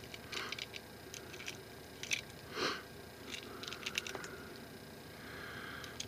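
Cartridges being pushed one at a time into a Walther P22's .22 LR magazine: a series of faint, irregular small metallic clicks.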